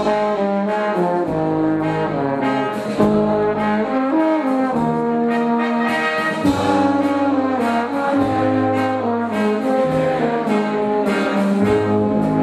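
Brass band playing a Czech folk dance tune with a steady beat.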